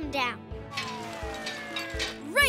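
Cartoon background music with a steady beat. About half a second in, a hissing sound effect starts, with two tones gliding slowly downward.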